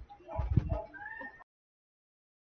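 A few brief, faint voice-like pitched sounds, then the audio cuts off abruptly to silence about one and a half seconds in.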